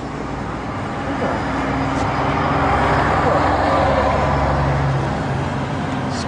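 A motor vehicle's engine running close by, growing louder over a few seconds and easing off near the end, as a vehicle passes along the street.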